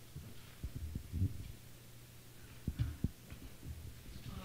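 Steady low electrical hum from the room's sound system, with a few soft low thuds about a second in and again near the end, and a brief hesitant "um".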